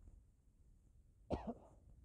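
A person coughing once, a short sharp cough with a smaller catch right after it, a little over a second in.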